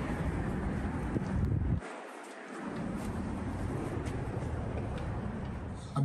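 Wind buffeting a handheld microphone outdoors over street noise, a steady low rumble that drops out briefly about two seconds in.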